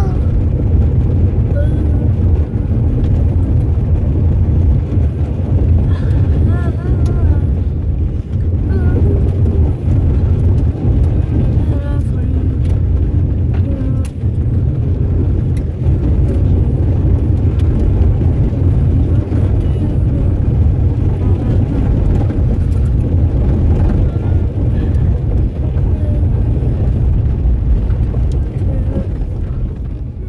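Steady low rumble of a car driving on a gravel road, tyre and engine noise heard inside the cabin. It gets quieter near the end.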